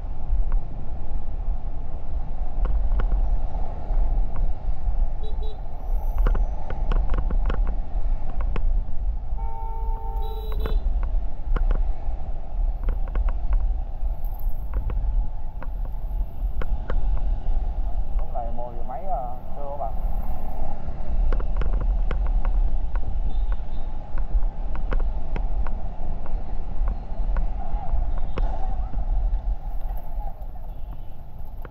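Steady wind noise on the microphone and traffic noise while riding a motor scooter through city streets. A vehicle horn sounds briefly about ten seconds in.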